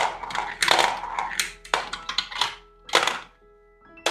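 Marbles being fed into the Potion Explosion board game's dispenser, clacking against one another and the tray in a quick run of sharp clicks that thins out near the end. Light background music plays under it.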